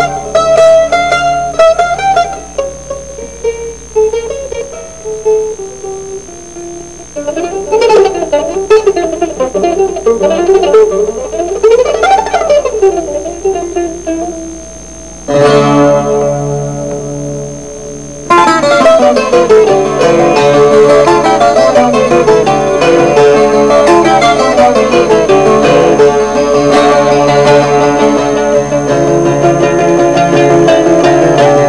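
Instrumental duet on acoustic guitar and a smaller plucked string instrument: softer picked passages with rising and falling runs in the first half, then the music turns louder and fuller about eighteen seconds in.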